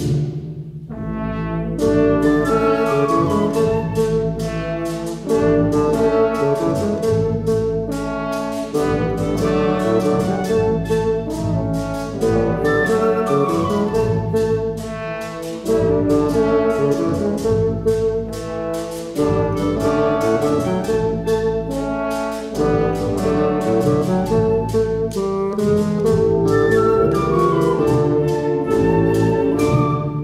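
Wind ensemble playing a Puerto Rican danza, brass prominent in full chords; the texture thins briefly just after the start, then the full band comes back in.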